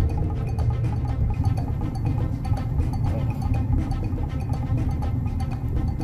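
Music with a heavy bass beat.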